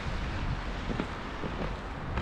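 Wind buffeting the microphone as a low, steady rumble, with a few faint footsteps in snow.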